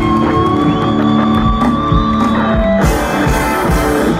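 A live rock band playing loudly, with guitars and a drum kit: held notes over a steady beat of drum hits.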